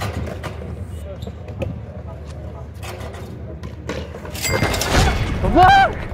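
A basketball game on an outdoor court: scattered thuds of the ball bouncing and hitting the rim, over a low steady rumble. About four and a half seconds in comes a loud rushing burst of noise, then a short rising-and-falling whoop.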